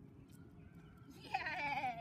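A woman's high-pitched, wavering voice starts a little over a second in and lasts under a second.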